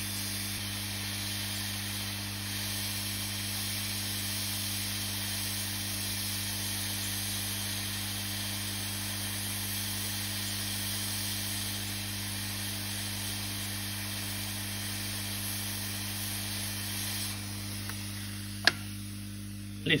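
Hot-air rework station blowing a steady hiss of hot air onto an EEPROM to melt the solder paste under its legs, over a steady low hum. The airflow stops about three seconds before the end, followed by a single sharp click.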